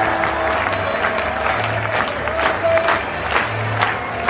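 Large stadium crowd cheering and clapping as a win is sealed, with music playing over the stadium PA underneath and a low beat pulsing about every two seconds.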